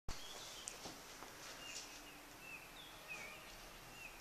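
Faint outdoor ambience with several short, high bird chirps, a few of them gliding down in pitch.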